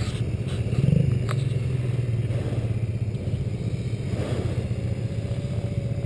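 An ATV engine idling close by, with a short rise in revs about a second in before settling back to a steady idle.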